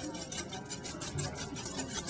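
Wire whisk beating egg yolks, sugar and sherry together in a bowl for zabaglione: a quick, even ticking of the wires against the bowl.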